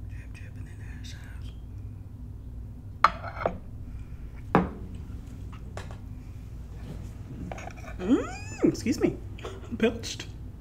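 A few sharp clinks and knocks of dishes and a fork on a plate at table. Near the end comes a woman's wordless vocal sound whose pitch swoops up and down.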